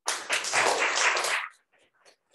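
Applause, many hands clapping together, that cuts off suddenly about one and a half seconds in, leaving only a few faint scattered claps.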